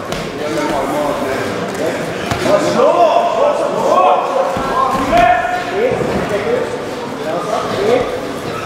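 Crowd and cornermen shouting over one another throughout, with occasional thumps from the grappling fighters on the canvas.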